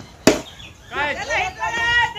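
A cricket bat strikes the ball: one sharp crack a quarter of a second in, the loudest sound here. About a second later players start shouting.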